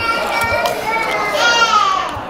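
A young child's high-pitched voice, in two long squeals over background chatter, the second falling in pitch near the end.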